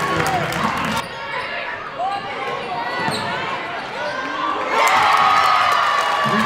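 Basketball game sounds on a hardwood gym court: sneakers squeaking and a ball bouncing, over the voices of players and spectators, louder near the end.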